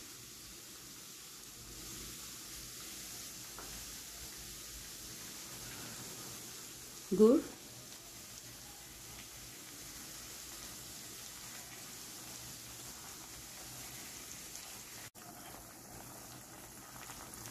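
Chopped garlic frying in oil and butter in a pan over low heat: a steady, faint sizzle.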